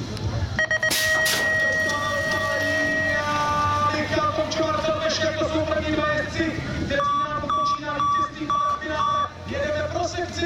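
BMX start-gate cadence: short beeps, then one long steady tone lasting about two and a half seconds. The start gate drops near its beginning with a couple of sharp metallic strikes. Voices follow as the race runs, with a string of short electronic beeps near the end.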